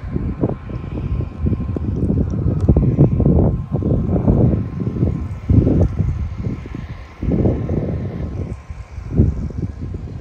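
Wind buffeting the microphone: a loud, gusty low rumble that swells and drops every second or so.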